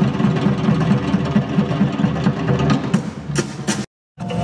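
Tahitian drum orchestra playing a fast, even rhythm on drums, with sharp strikes standing out near the end; the sound cuts out suddenly just before the end.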